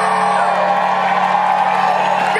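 Live rock band's amplified music holding a steady chord, with whoops and shouts over it.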